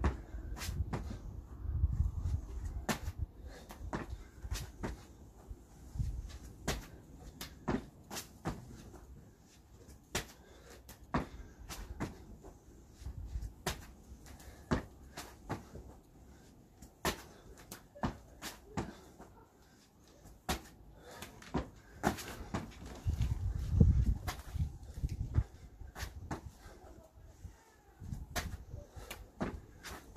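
A person doing burpees with a jump clap: sharp hand claps over the head, about one a second, mixed with thumps of hands and feet landing on a foam mat over paving slabs.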